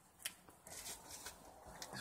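Faint rustling with a sharp click about a quarter of a second in, from someone moving over dry twigs and dirt.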